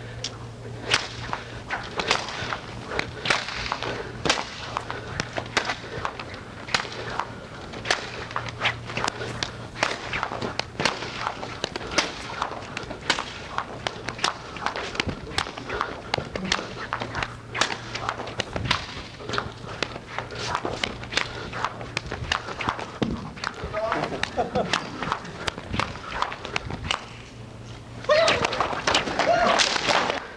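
A fast, irregular run of sharp slaps and cracks, several a second, from a martial artist's solo demonstration of strikes. A steady low hum runs underneath.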